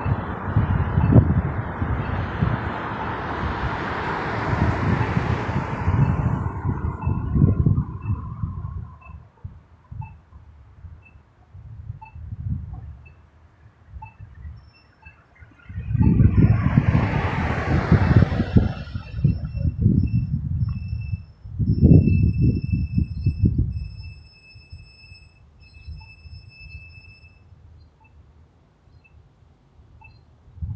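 Street traffic passing through a city intersection: one vehicle goes by in the first several seconds and another, louder, about two thirds of the way through, with wind buffeting the microphone.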